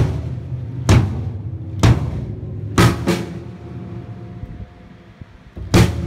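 Acoustic drum kit played in slow single hits about a second apart, each left ringing. After a pause of about a second and a half, there is one more hit near the end.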